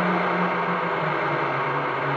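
Digitally processed experimental sound-collage drone: a dense, steady wash of noise over a low hum that steps down in pitch about a second and a half in, made from chopped and heavily manipulated recordings of jingling keys, voice and body percussion.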